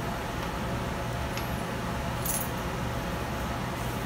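Quiet indoor room tone: a steady low hum under faint hiss, with a brief high hiss a little over two seconds in.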